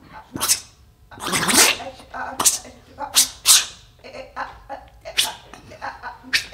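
Improvising human voices making wordless sounds: a string of short breathy hisses and puffs, with a pitched vocal sound that slides downward about a second and a half in.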